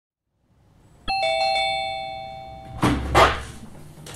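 Doorbell chime, a two-tone ding-dong, higher note then lower, struck about a second in and ringing on as it fades. It is cut off by two short noisy sounds as the door is opened.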